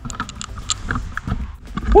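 Knocks, clicks and low rumble of a handheld camera being handled and swung around, ending in a short rising shout.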